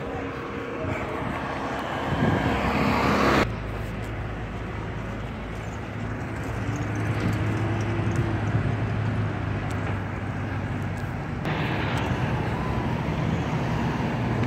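A vehicle engine running with a steady low hum over outdoor background noise. The sound changes abruptly twice, about three and a half seconds in and again near the end.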